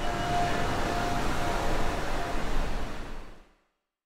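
A loud low rumble of soundtrack noise with a faint wavering tone, fading out to silence about three and a half seconds in.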